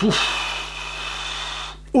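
A man's startled gasp of reaction: a brief voiced onset that turns into about a second and a half of breathy hiss, fading away.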